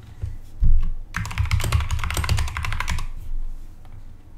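Computer keyboard typing: a quick run of keystrokes lasting about two seconds, entering a short phrase. A low thump comes just before the typing starts.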